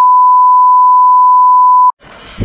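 Colour-bar test tone: one loud, steady electronic beep at a single pitch, which cuts off suddenly just before the end.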